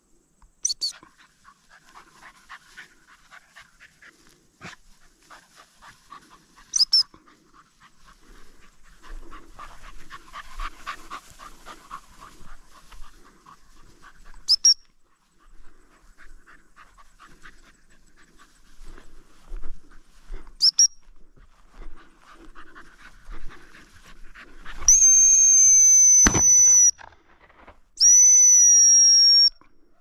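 Working cocker spaniel panting and moving through tussock grass, with four short, sharp high chirps spaced about six seconds apart. Near the end come two long, loud blasts on a dog whistle, each about two seconds.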